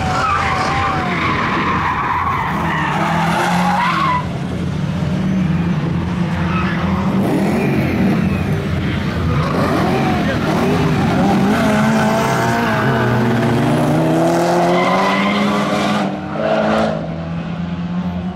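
Car engines revving up and down as cars are driven hard around a race track, with tyres squealing through the corners.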